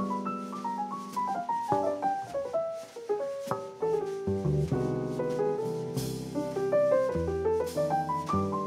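Live jazz played on a stage keyboard with a piano sound, in quick runs of notes stepping up and down, over upright bass and light drums.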